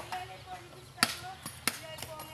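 Irregular sharp chopping knocks, three or four in two seconds, of coconuts being struck open with a blade during copra making.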